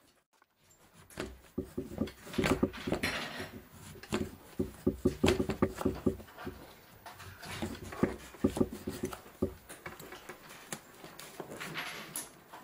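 Kitchen knives slicing raw potatoes and a sweet potato on a wooden cutting board: irregular knocks and clicks as the blades cut through and strike the board, mixed with the clatter of handling toothpicks and small parts.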